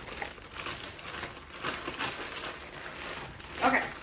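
Plastic zip-top bag crinkling and rustling in irregular crackles as it is shaken and tossed to coat halved mozzarella sticks in flour.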